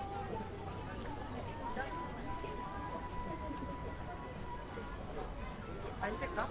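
Crowded pedestrian street: many passersby talking at once, with a steady high tone held for about three seconds in the middle.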